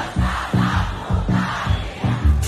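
Loud live band music over a concert PA with a steady bass beat, and a large crowd singing and shouting along.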